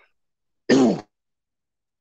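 A man clears his throat once, briefly, about two-thirds of a second in.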